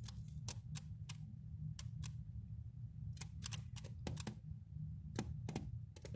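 Irregular light clicks and taps, about fifteen in a few seconds, from handling a flashlight and phone over a plastic incubator tub, over a steady low hum.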